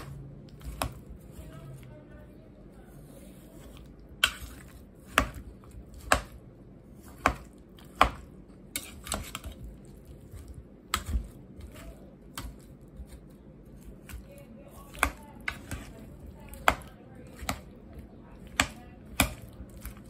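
A metal spoon chopping boiled potatoes in a stainless steel pot, knocking against the pot in sharp, irregular clicks about once a second.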